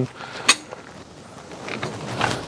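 Hi-Lift jack being lowered under load in the unload position as its handle is stroked: one sharp metal click about half a second in, then faint creaking.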